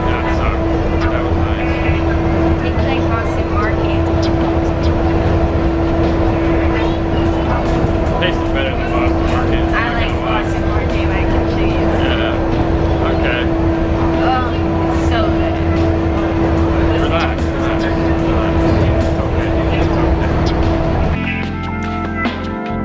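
Walt Disney World monorail running, heard inside the cabin: a steady electric hum over a low rumble, with people talking over it. Near the end it cuts off and music begins.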